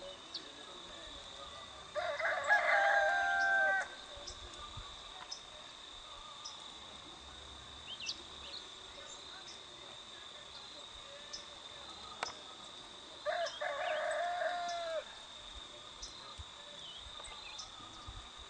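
A rooster crowing twice, each crow about two seconds long and ending on a held note, over a steady high-pitched insect drone.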